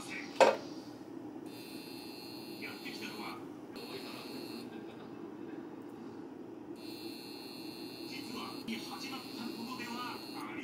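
A sharp metallic clink against a stainless steel pot about half a second in. Then an induction hob gives a high-pitched whine that cuts in and out several times over a low steady hum.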